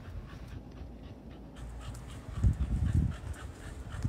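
A dog panting close by, with a run of heavier breaths about two to three seconds in.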